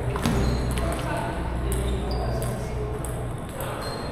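Table tennis balls clicking off paddles and tables in irregular, sharp knocks, the clearest in the first second.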